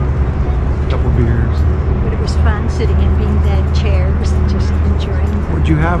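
Outdoor riverside walkway ambience: a steady low rumble of wind on the microphone and city traffic, with faint voices of passers-by and a couple of short bird chirps about halfway through and near the end.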